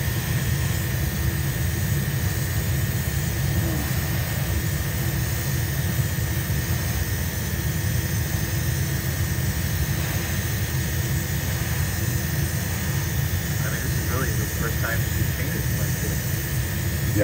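Steady roar of a paint spray booth's extraction fan running without a break while an airbrush lays down clear coat.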